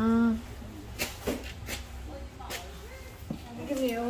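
Rustling and a few sharp crinkles of packaging and clothing as items are lifted out of a cardboard box, with a short vocal sound at the start and speech returning near the end.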